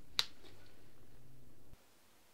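A Scrabble tile set down on the board with one sharp click, over a low steady hum that cuts off suddenly near the end.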